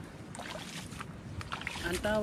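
Footsteps wading through shallow water and soft mud, with a few irregular splashes and squelches. A man's voice starts right at the end.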